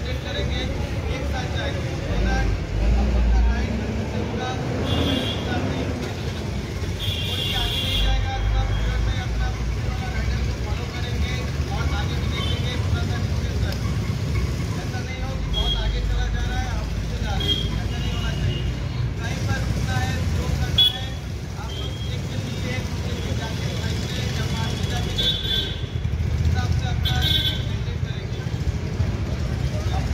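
Royal Enfield motorcycles idling together in a large group, a steady low engine rumble mixed with street traffic.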